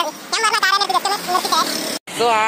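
A man's voice talking, not made out as words, cut off abruptly at the end by an edit.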